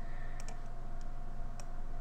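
A few light, separate clicks at the computer, a double click about half a second in and then single clicks about a second apart, as the Python script is run; a faint steady hum lies under them.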